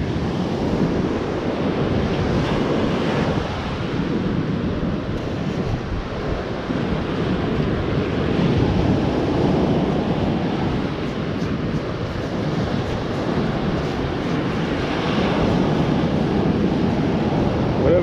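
Wind buffeting the microphone over surf washing up the beach, a steady rushing noise throughout.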